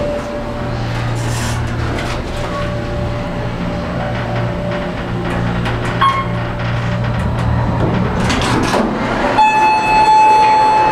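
Otis hydraulic elevator's pump motor running with a steady hum and faint whine as the car rises, stopping about eight seconds in. The doors then slide open, and a sustained chime-like tone sounds near the end.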